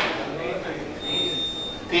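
Quiet background voices murmuring in a livestock sale ring during a lull after the hammer falls. A thin high electronic tone sounds for about a second midway.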